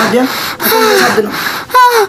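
Voices in a small room, with pitch rising and falling and breaths in between, and a high-pitched drawn-out vocal sound near the end.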